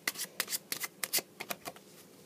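A deck of playing cards being shuffled in the hands, a quick run of crisp card slaps about six a second.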